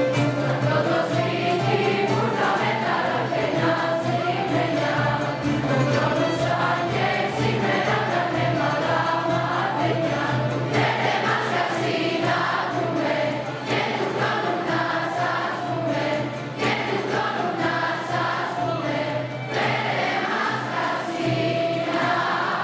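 Children's choir singing a Christmas song, accompanied by violins and plucked lutes.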